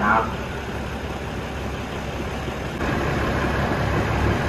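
Diesel engine of a stationary passenger train running steadily at idle, a low hum that grows louder and fuller about three seconds in.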